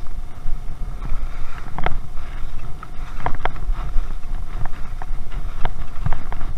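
Wind rushing over a chest-mounted action camera's microphone as skis run down packed snow, a steady low rumble. Several sharp clicks or clacks come through it, the first about two seconds in and a cluster a little past the middle.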